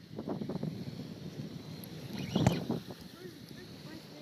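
Close-up handling noise of a spinning reel being wound while playing a fish on light line: a run of irregular small clicks, then one sharp knock about two and a half seconds in, with wind on the microphone.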